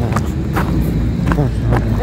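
Talking over a steady low rumble of passing street traffic.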